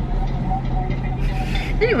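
Steady low hum of a car's interior with the engine running, under the two women's talk; a woman's voice comes in near the end.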